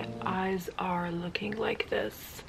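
A woman talking to the camera. A held music chord ends about half a second in.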